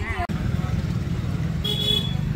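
Motorcycle engine running as the bike is ridden, a steady pulsing low rumble, with a short high horn toot near the end.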